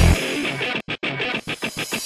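Industrial darkcore (frenchcore) track in a brief breakdown: the pounding kick drum drops out, leaving a thinner chopped texture. The sound cuts out to silence twice near the middle, then a run of quick stuttering hits leads back to the kick.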